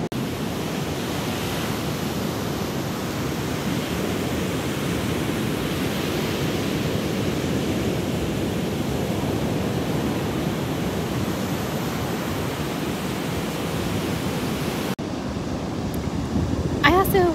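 Ocean surf breaking on a sandy beach: a steady, continuous wash of waves, cut off briefly about a second before the end.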